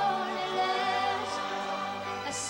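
A choir singing long, held notes.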